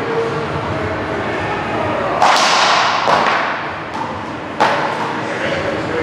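A ball being struck by solid wooden paddles and rebounding off the court walls during a rally: four sharp cracks, the first about two seconds in and the loudest, the last just before five seconds. Each crack rings on in the echo of the large court.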